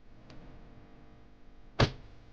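A single short, sharp whoosh-and-hit sound effect near the end, much the loudest thing here, laid on a scene cut; a faint click comes just before, near the start.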